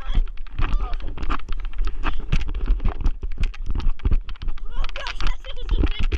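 Running footfalls on grass, with a hand-held action camera jostling and knocking against the runner's hand at every stride and wind buffeting its microphone. Bits of children's voices come through between the thumps.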